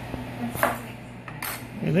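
A kitchen knife knocking on a wooden cutting board twice while vegetables are cut, over a low steady hum.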